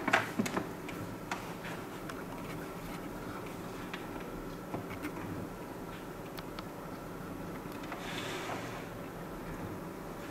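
Small plastic clicks and taps as the clear lid of a Kebonnixs egg incubator is set back on and seated over the egg tray, most of them in the first second or so. A faint steady hum runs underneath.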